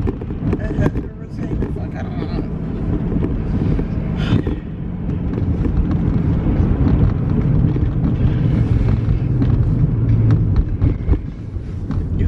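Steady low rumble inside a car cabin, typical of an idling engine heard from the driver's seat, with a few soft clicks and clothing rustles.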